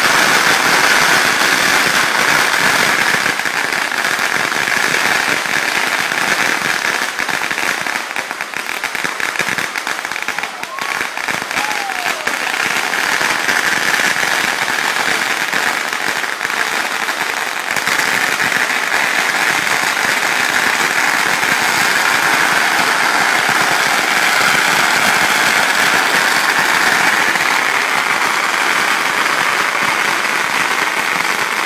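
Fireworks lance-work sign burning with a steady fizzing hiss and crackling. The crackles come thickest about a third of the way in.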